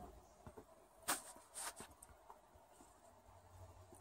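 Mostly quiet, with two or three brief crunches of footsteps in snow a little after a second in.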